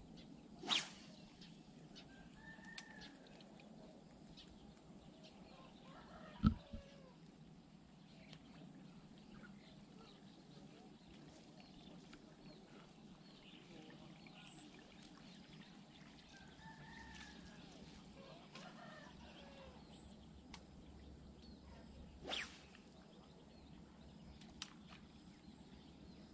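Faint roosters crowing several times, with a few sharp clicks and knocks, the loudest about six and a half seconds in.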